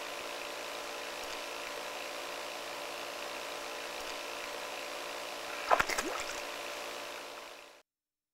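Steady rush of water with a hum of several steady tones from a turtle tank's water circulation, with one brief sharp sound about six seconds in. The sound fades out just before the end.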